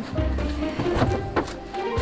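Background music with a steady bass line, with a few sharp knocks over it.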